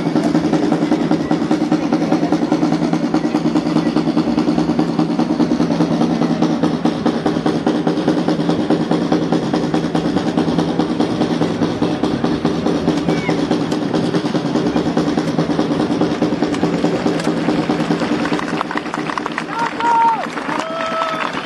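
Military snare drums playing a long, steady drum roll that eases a little near the end, over crowd murmur.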